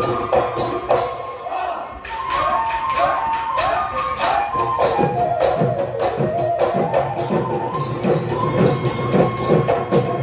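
Live Assamese Bihu husori music: dhol drums and small hand cymbals beating a fast, even rhythm under a sung melody, dipping briefly about two seconds in before coming back fuller.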